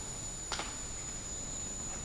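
Steady hiss of a small hydrogen flame burning at a burner jet, with a single sharp click about half a second in.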